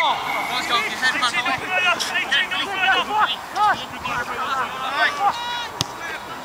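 Several men's voices talking and calling out over one another around a football pitch, with a sharp knock near the end.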